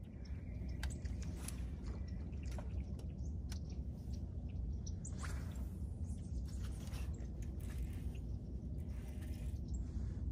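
Open-air ambience on a boat on calm water: a steady low rumble with scattered faint ticks and chirps.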